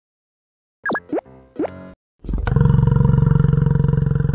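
Two quick cartoon sound effects that each sweep sharply down in pitch, then a loud, long, low yak call with a rapid pulse in it, lasting about two and a half seconds.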